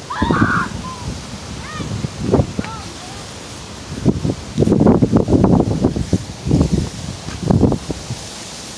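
Phone microphone handling noise: rubbing and knocks from fingers and movement, loudest in the second half. A few short, high, falling calls sound in the first three seconds.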